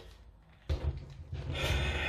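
A few moments of quiet, then, from under a second in, a plastic 9x9x9 V-Cube being handled and its layers turned, a sliding scrape that builds toward the end.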